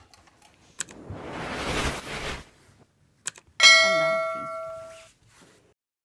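Subscribe-button animation sound effect: a click, a whoosh, another click, then a bell ding that rings out and fades over about a second and a half.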